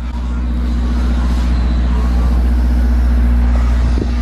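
Low, steady drone of a motor vehicle engine running, with a deep rumble beneath it, growing slightly louder in the first second.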